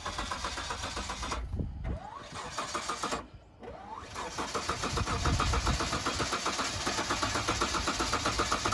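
An old Mitsubishi SUV's engine being cranked over by the starter in three runs with short breaks between them. It sputters without catching, because the engine has been filled with dyed diesel.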